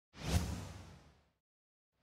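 A whoosh sound effect with a low boom under it. It swells quickly, peaks, and fades out over about a second.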